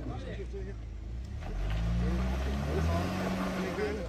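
Tank 300 SUV engine revving under load as the vehicle pulls forward through mud, rising in pitch about a second and a half in and holding high before easing near the end.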